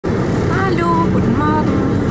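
Van engine and road noise heard inside the cab, a steady low rumble, with a voice speaking briefly twice over it.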